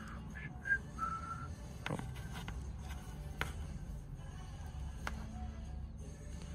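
Handling and button presses on a Garmin Descent Mk3i dive computer: sharp clicks about two, three and a half and five seconds in. Near the start come three short high tones, each lower than the one before.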